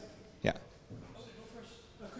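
Speech only: one short spoken "yeah" about half a second in, with low room tone around it.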